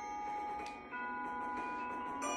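Mallet keyboard percussion: struck notes ringing on as clear held tones, with a fresh note struck about a second in.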